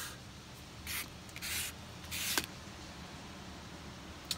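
Three short, soft rustling noises about half a second apart, the last ending in a faint click, over quiet room tone.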